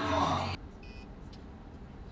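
Voices and background music cut off abruptly about half a second in. They give way to the low rumble of a car's cabin in traffic, with one short electronic beep a moment later.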